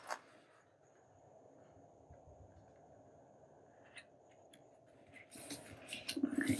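Near silence, with a few faint ticks, then paper being handled and pressed flat against a table near the end.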